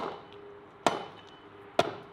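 Three sharp chopping blows of a hand tool into wood, about a second apart, each leaving a brief ringing.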